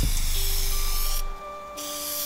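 Aerosol can of acrylic graffiti paint hissing as it sprays, with a short break about a second in, over background music.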